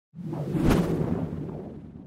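Logo-animation sound effect: a whoosh that sweeps in and lands on a sharp hit less than a second in, then a deep tail that slowly fades away.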